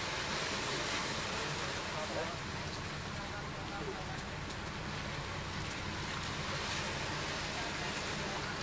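Steady outdoor background noise with a low, even hum underneath and faint, distant voices.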